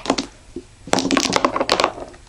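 Billiard balls on a miniature pool table clacking together: a couple of light clicks at the start, then a rapid clatter of clicks about a second in as the racked balls are broken and scatter.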